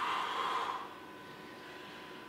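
A person breathing out hard with effort while holding a side plank, one breathy exhale lasting under a second near the start.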